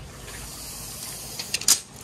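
Steel tape measure being handled against a window frame, with a few sharp clicks and a clatter near the end, the loudest as the blade slips and buckles.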